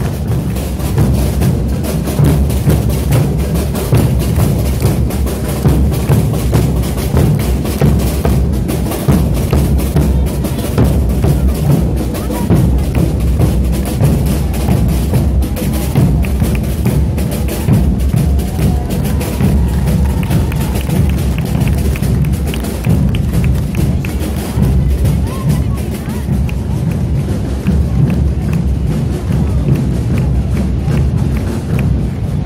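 A large massed band of Portuguese bass drums (bombos) and snare drums, a Zés Pereiras band, drumming continuously in dense, steady strokes.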